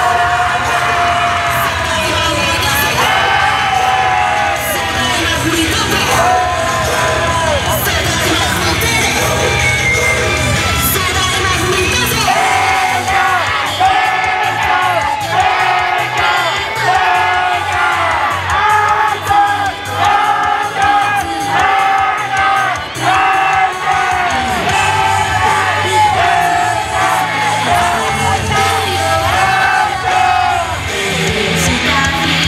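Female pop singer singing into a handheld microphone over a loud, upbeat backing track, with fans yelling along. About twelve seconds in, the heavy bass drops out and the voice carries on over a lighter accompaniment.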